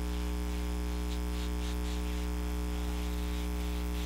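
Steady electrical buzz from a wireless microphone on low batteries: a constant low hum with a stack of higher tones above it, unchanging throughout.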